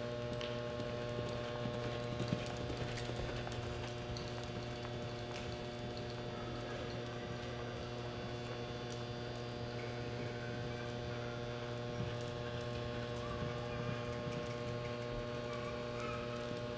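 A steady electrical hum, with faint hoofbeats of a horse loping on soft arena dirt.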